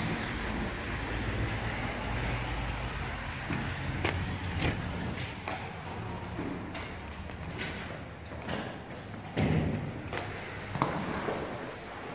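Scattered knocks and thumps of a handheld phone being carried while walking, over a low steady hum. A few louder thumps stand out among them.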